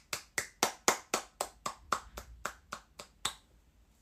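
A person's hands making a steady run of sharp smacks, about four a second, that stops a little over three seconds in.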